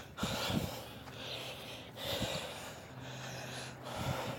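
A person breathing audibly close to the microphone while walking, one soft breath about every second, with a faint steady low hum joining near the end.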